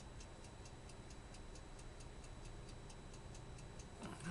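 Faint, steady ticking, several ticks a second at an even pace, over low room noise.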